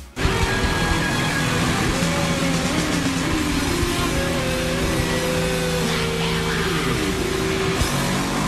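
Live rock band with distorted electric guitar playing long held notes over bass and drums. Some notes slide down in pitch near the end.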